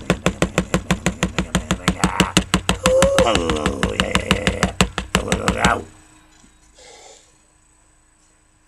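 A fast, steady percussion beat of about five sharp knocks a second, with a bending melodic line over it from about two seconds in. The beat and melody stop suddenly a little before six seconds in.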